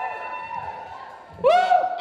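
A few audience members whooping in answer to the host: a long held cheer, then a loud "woo!" about a second and a half in, from what the host calls a vocal minority.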